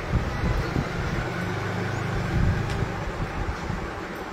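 Steady low rumble with a hiss over it, a continuous background noise.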